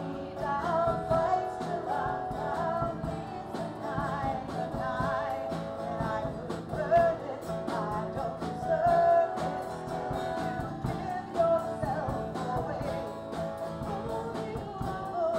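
Live worship song: a woman singing with her acoustic guitar strummed, backed by a drum kit keeping a steady beat.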